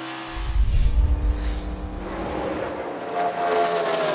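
NASCAR Cup race cars' V8 engines at racing speed: a deep rumble for the first couple of seconds, then a high engine note that slowly falls in pitch near the end.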